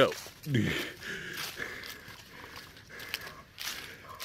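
Footsteps crunching and rustling through fallen leaves in an irregular run of steps.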